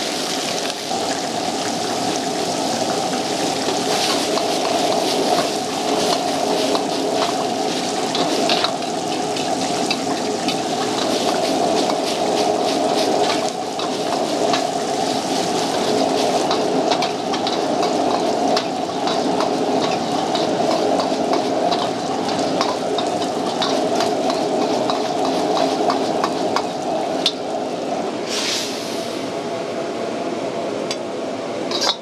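Noodles sizzling and frying in a wok over a high-powered gas burner, over a steady roar, with frequent clicks and scrapes of a metal ladle against the wok as the food is tossed.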